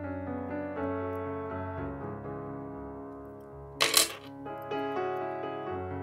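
Background piano music with a flowing series of notes. A single short, sharp click about four seconds in is the loudest sound.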